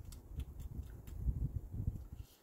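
Low, uneven rumble of wind on the microphone, with a few faint small clicks.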